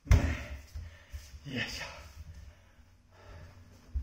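A man breathing hard after a set of practice sword swings. There is a sudden loud breath with a thud right at the start, and a second heavy breath, falling in pitch, about a second and a half in.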